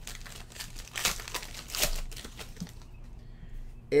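Foil wrapper of a football trading-card pack crinkling and tearing as it is ripped open by hand, with louder crackles about a second in and again near the two-second mark.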